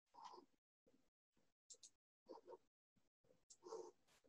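Near silence, with a few faint, brief sounds near the start, in the middle and near the end.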